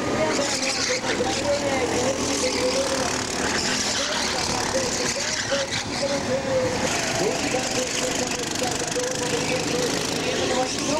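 Racing kart engines buzzing as karts lap the track, the pitch repeatedly rising and falling as they ease off and accelerate through the corners.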